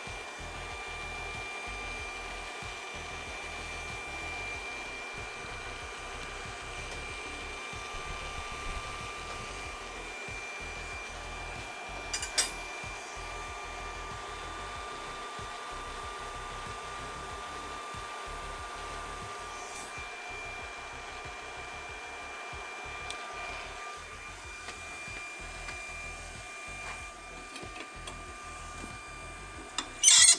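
Solary Hot Rod 1100 W handheld induction bolt heater running, its cooling fan whirring steadily under a thin high whine, while its coil heats a seized nut on a cast iron exhaust manifold toward red hot. There are a couple of brief clicks in the middle.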